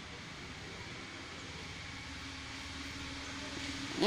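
Steady low background noise with no speech; a faint steady hum joins about two seconds in.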